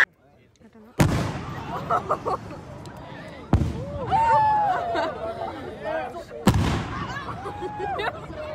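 Explosive charges detonating in a lake: three sudden blasts, about a second, three and a half and six and a half seconds in, each with a lingering rumbling tail. Spectators' voices exclaim between the blasts.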